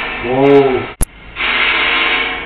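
A hissing, breath-like noise on a surveillance camera's microphone, with a short voiced sound that rises and falls in pitch, then a sharp click about a second in. The investigators take it for a woman's breath, almost as if she were crying.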